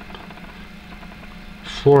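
A faint steady low hum during a pause in speech, with a spoken word starting near the end.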